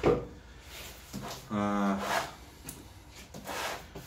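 A cardboard product box being handled on a table saw top: a sharp knock right at the start, then faint rubbing and sliding of hands on the cardboard. About a second and a half in, a man's held 'uhh' hum.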